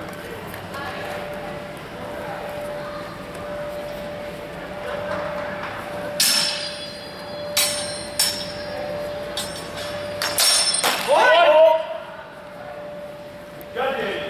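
Steel longswords clashing: sharp metallic clangs that ring on briefly, one about six seconds in, two more around seven and a half and eight seconds, and a quick flurry near ten and a half seconds. A loud shout follows right after the flurry, over a faint steady hum.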